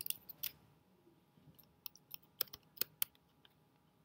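Computer keyboard and mouse clicking as dimensions are typed and points are clicked: about ten sharp clicks in two clusters, one right at the start and one from about one and a half to three seconds in.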